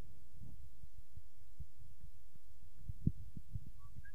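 Low, irregular rumbling thuds on the microphone, like wind buffeting it, with one short sharp knock about three seconds in.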